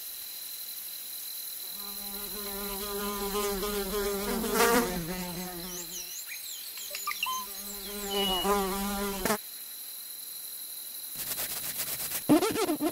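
A fly buzzing in flight, its wingbeat hum rising and falling in pitch and loudness as it passes close. There are two passes, the second stopping suddenly.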